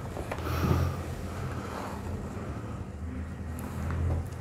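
Steady low background hum, with a sharp click shortly after the start and a brief soft rustle just after it.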